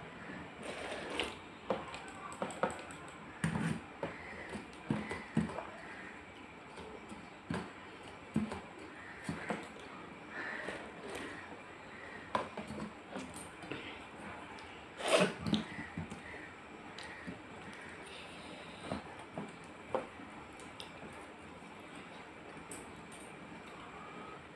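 Close-up eating sounds of a person eating panta bhat (watery rice) by hand from a steel plate: sipping and slurping the rice water, with lip smacks and chewing clicks coming thick and fast. The loudest slurp comes about 15 seconds in, and the sounds thin out after that.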